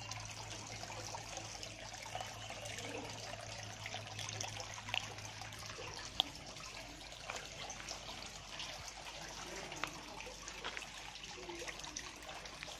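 Water trickling steadily into a fish pond, with a low hum that fades out about halfway through and a few small clicks.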